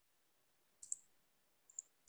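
Near silence broken by a few faint, sharp computer clicks: a quick pair about a second in and a single one near the end.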